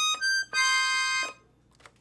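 Black Paolo Soprani piano accordion (41 treble keys, 120 bass, three treble reeds: low, middle and high) playing a few quick short notes and then one held note on the treble keyboard. The register is the master switch, with the low, middle and high reeds sounding together.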